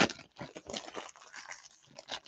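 Foil trading-card pack wrappers crinkling in the hands: a sharp crackle at the start, then irregular smaller crackles.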